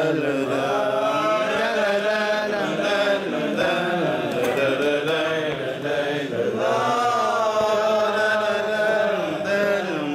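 Unaccompanied male singing of a Hebrew piyyut in maqam Rast, long held notes whose pitch bends and ornaments without a break.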